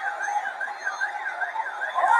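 An electronic siren warbling rapidly, rising and falling about four times a second.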